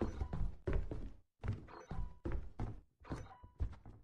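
A series of dull thunks, about six of them spaced roughly two-thirds of a second apart.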